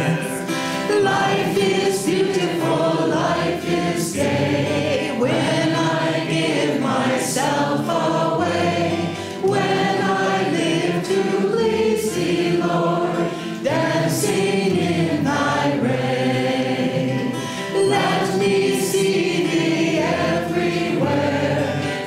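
A woman and a man singing a devotional song together, accompanied by a strummed acoustic guitar.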